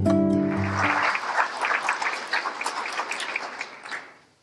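Acoustic guitar music ending about a second in, giving way to audience applause that fades out near the end.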